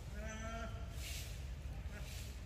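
An animal's single short call, level in pitch and about half a second long, followed about a second in by a brief rustle, over a steady low rumble.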